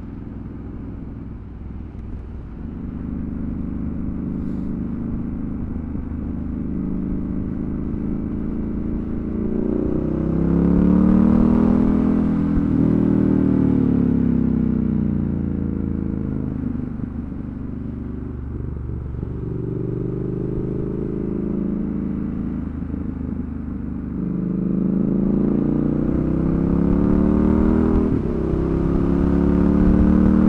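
Triumph Scrambler 1200's parallel-twin engine under way, rising and falling in pitch as it pulls and eases off. It gets louder during a pull about a third of the way in, and again near the end.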